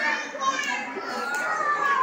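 A roomful of young children talking and calling out at once, many small voices overlapping in a steady chatter.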